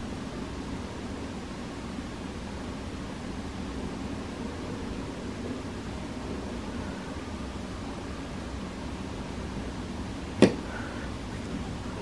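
Steady low background hum and hiss of a quiet room, with a single short click about ten seconds in.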